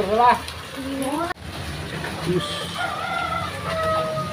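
A rooster crowing: one long drawn-out call through the second half, after a few spoken words at the start.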